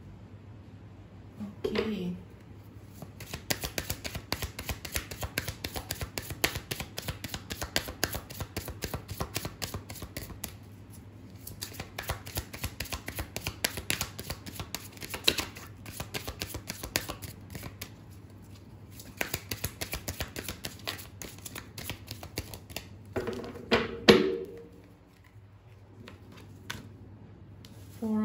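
A deck of tarot cards being shuffled by hand: long runs of rapid, light card flicks and riffles, pausing briefly twice.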